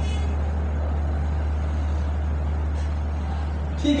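A steady low hum with a faint even hiss over it.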